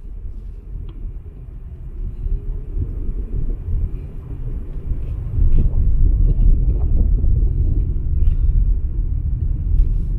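Low road and engine rumble inside a moving car's cabin, growing louder about halfway through.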